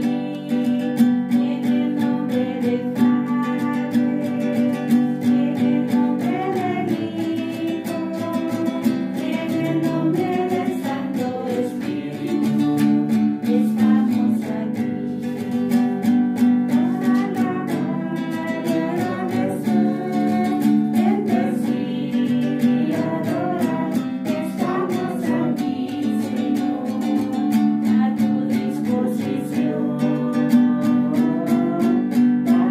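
Opening hymn of a Mass: a voice singing to a strummed stringed instrument, with steady, evenly repeated strumming under the melody.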